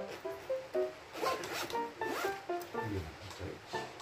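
Zipper pulled on a drone's carrying case, two quick runs about a second apart, over light background music with a stepping melody.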